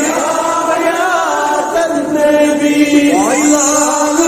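Male voices chanting a devotional Islamic chant in praise of the Prophet, the melody settling into a long held note in the second half.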